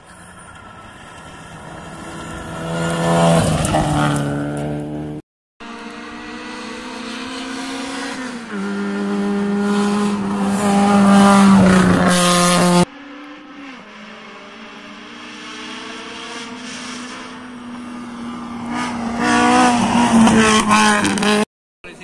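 Rally cars driven flat out on a gravel stage, in three separate passes that break off abruptly. Each engine grows louder as the car approaches and drops in pitch as it goes by, with a gear change in the second pass.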